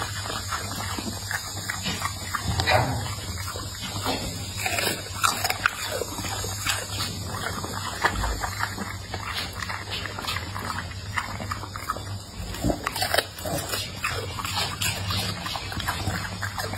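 A pit bull-type dog chewing food and smacking its lips and tongue, a run of short, irregular wet clicks and smacks.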